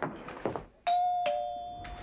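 Two-note doorbell chime: a higher ding, then a lower dong about half a second later, both ringing on and fading. It signals someone arriving at the front door.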